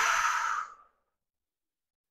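A person's long audible breath out, a sigh-like exhale on the effort of an arm-circle exercise, ending about two-thirds of a second in.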